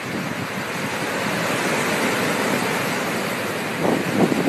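Sea surf breaking and washing up a beach: a steady rushing hiss that builds slightly over the first couple of seconds, then holds.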